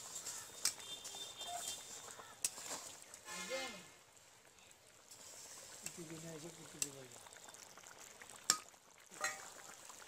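Metal spatula knocking and scraping against a large aluminium cooking pot as boiling fish curry is stirred, giving a handful of sharp clicks spread through, the loudest a little before the end.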